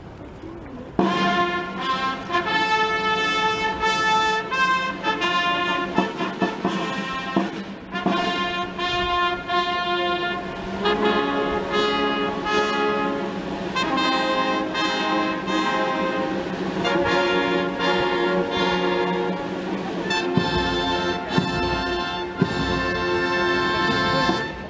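Military brass band playing, with tubas, trumpets and trombones, starting suddenly about a second in. Heavy low beats join near the end.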